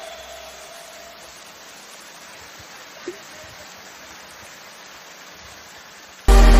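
Steady faint hiss of open-air background noise, with one brief faint chirp about three seconds in.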